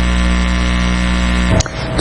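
Loud steady electrical hum with a buzzy stack of overtones, cutting off abruptly about one and a half seconds in.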